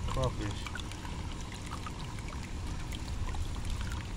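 Water trickling into a bait tank from its pump hose, over a steady low hum.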